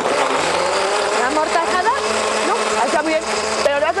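Countertop blender running steadily, puréeing a tomato-and-chipotle salsa, then cutting off suddenly near the end.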